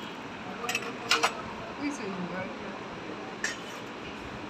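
Stainless-steel spoons and dishes clinking against steel plates and bowls while food is served at a table: a few sharp clinks, two close together about a second in and one near the end, over a murmur of voices.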